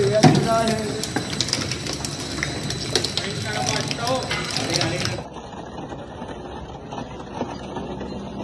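Industrial twin-shaft shredder's toothed cutter blades grabbing and tearing a sheet-metal oil can, a dense run of irregular crunching and clanking. About five seconds in, the sound drops suddenly to a quieter, steadier machine noise.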